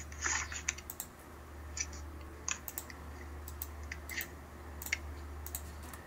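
Scattered light clicks and taps, irregular and a few each second, over a steady low hum.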